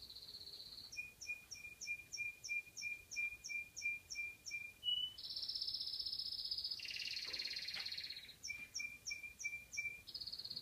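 A songbird singing in phrases: a high trill, then a run of even chirps about three a second, another high trill and a warbling passage, and more chirps near the end.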